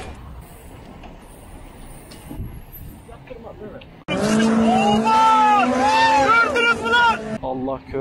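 Faint rolling and wind noise for about four seconds, then an abrupt cut to a loud car clip: a pitched squeal wavering up and down over a steady low engine drone, which ends in another sudden cut.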